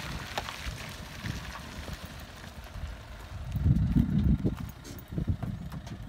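A vehicle engine idling, with a louder low rumble swelling briefly a little under four seconds in.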